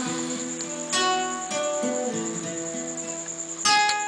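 Acoustic guitar playing alone between sung lines, with notes plucked about a second in and again half a second later, and a full strum just before the end.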